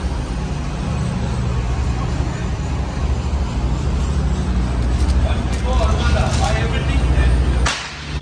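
Steady low machinery rumble filling a large produce warehouse, with faint voices in the middle; the sound drops away sharply just before the end.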